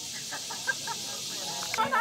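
Outdoor ambience: a steady high hiss with a run of short, quick chirping or clucking calls in the first second.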